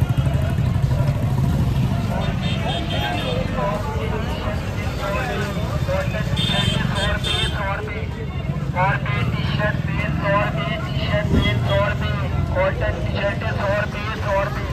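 Busy street-market hubbub: the voices of vendors and shoppers over the steady rumble of motorcycle and road-traffic engines.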